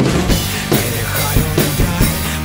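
Acoustic drum kit played to a steady beat over a pop-rock backing track, in an instrumental stretch without singing.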